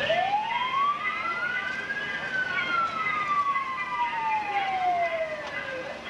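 An emergency-vehicle siren sounds once, winding up in pitch over about two seconds and then sliding slowly back down over the next four.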